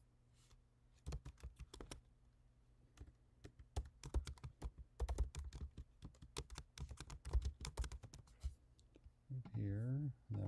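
Typing on a computer keyboard: a few key clicks about a second in, then a quick, dense run of clicks from about four to eight and a half seconds, over a faint steady hum. A man's voice begins near the end.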